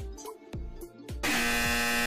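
Background music with a steady beat, then, a little over a second in, a loud steady buzzer sound effect that lasts just under a second and stops sharply.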